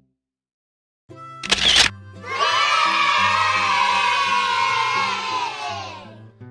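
A group of children cheering, loud and sustained for about four seconds, over background music. It comes after a second of silence and a short, sharp noisy burst.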